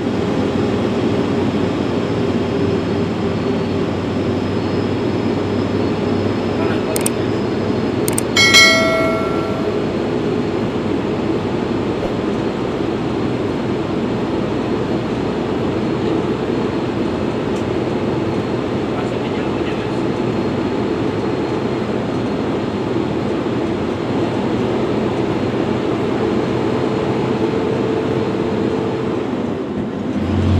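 Hino 500 truck's diesel engine running steadily with cab and road noise, heard from inside the cab on a gravel road. About eight seconds in, a couple of clicks are followed by a short ringing tone, about a second long, which is the loudest moment.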